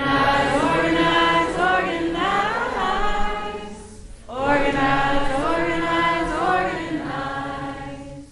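A group of voices singing together in two long phrases, the second starting about four seconds in after a short dip.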